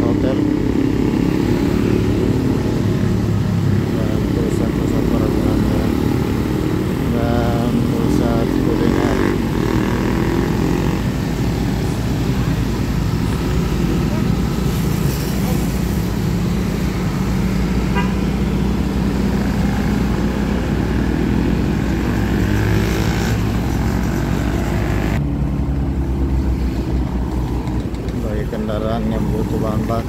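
Steady city traffic noise, mostly motorcycle engines running close by in a stream of scooters and cars. Near the end the sound suddenly turns duller.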